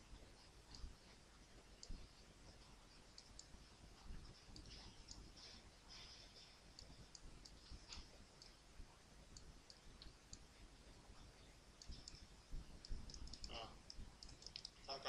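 Faint, irregular computer mouse clicks over a low hiss, as vertices are selected and dragged in 3D modelling software; a short vocal sound comes just before the end.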